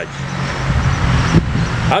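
Road traffic: a motor vehicle running nearby, a steady low hum with road noise.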